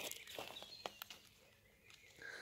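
A few faint, short clicks in the first second, then near silence.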